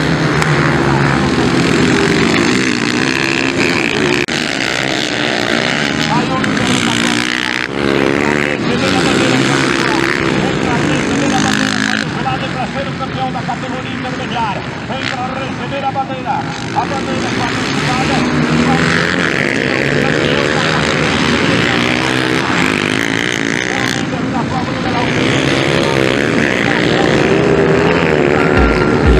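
Dirt bike engines revving up and down as motorcycles race on a dirt track, the pitch rising and falling with the throttle.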